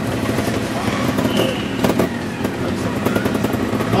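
Trials motorcycle engine running steadily at low revs as the bike creeps down over rocks, with scattered clicks and one sharper knock about two seconds in.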